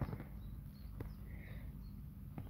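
Soft clicks and scuffs, one at the start and one about a second in, from a kitten tugging at a feather toy inside a fabric pet carrier, with faint high chirps in the background.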